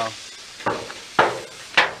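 Three short, sharp knocks about half a second apart, the last two the loudest.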